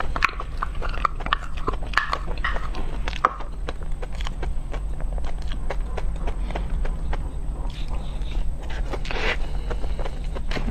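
Close-miked chewing of a soft chocolate dessert: wet mouth sounds and lip smacks with many small sharp clicks, busiest in the first three seconds, and a longer wet swallow or slurp about nine seconds in. A steady low hum runs underneath.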